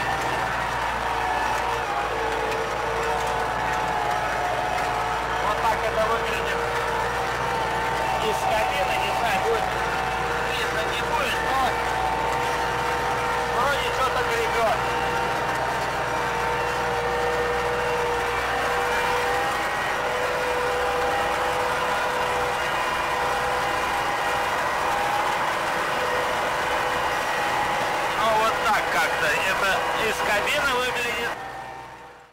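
MTZ-80 tractor's four-cylinder diesel engine running steadily under load, heard from inside the cab, as it pulls a three-furrow plough through the soil. The engine note holds an even pitch throughout.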